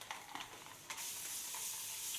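A steady, hissing sizzle starts suddenly about a second in, from a corded heated razor drawn through wet hair, after a few faint ticks.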